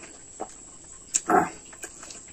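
Close-up mouth noises of a man eating rice with his fingers: chewing and lip smacks, with a short louder mouthful noise a little past the middle.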